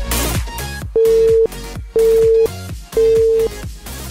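Three electronic countdown beeps, one a second, each a steady half-second tone, over electronic dance music. They mark the final seconds of a workout interval timer running out.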